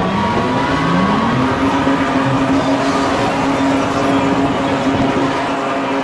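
Ford Cortina's engine revving up over the first second and a half, then held at steady high revs as the car spins, with the hiss and screech of its rear tyres spinning on the concrete.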